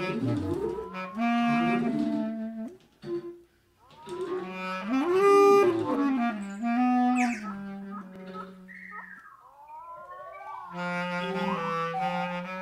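Bass clarinet playing held low notes and sliding phrases in a free improvisation. Between about 7 and 10 seconds in, high whistled glides swoop up and down over a sustained low clarinet note.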